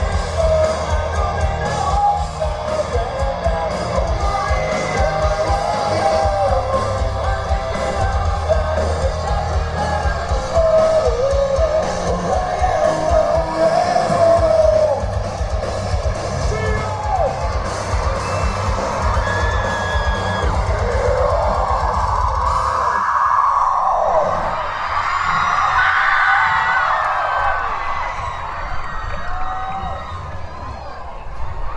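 Live hard rock band playing loud, with distorted electric guitar, drums and yelled singing. About three-quarters of the way through, the drums and bass stop, and high wavering voices and guitar carry on to the end.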